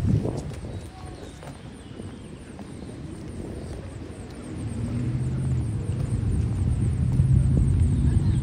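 A motor vehicle's engine with a low, steady rumble, building from about halfway through and loudest near the end, over general street traffic noise.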